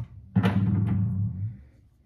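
A sharp click, then a loud, low, drum-like musical hit lasting about a second and fading out.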